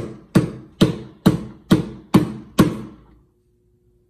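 Open hand slapping the wooden backbox of a Bally Star Trek pinball machine, seven even blows a little over two a second, each with a short hollow ring. It is being struck to jolt a loose connection behind the glitching score displays. The blows stop about two-thirds of the way in, leaving a faint steady hum.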